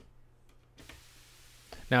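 White noise through the Propust's passive high-pass filter cuts off abruptly, with a faint click or two from the Eurorack patch cable jack. A low steady hum continues underneath, and a faint hiss comes back about a second in.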